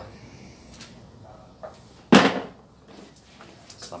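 A single sharp knock of a hard object about two seconds in, loud and dying away quickly, with a few faint clicks before it.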